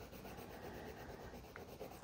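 Water-soluble wax pastel rubbed back and forth on sketchbook paper while a swatch is coloured in, a faint steady scratching.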